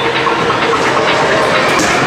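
Steady clatter and din of arcade game machines, with a sharp smack near the end as the punching bag of a boxing arcade machine is hit.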